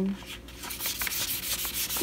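Sheets of annatto-dyed paper rustling and rubbing as they are handled and turned over, in a run of short, irregular scratchy strokes.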